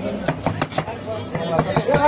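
Two steel cleavers chopping red onions on a plastic cutting board: quick, uneven knocks of the blades striking the board, several a second, overlapping from the two choppers.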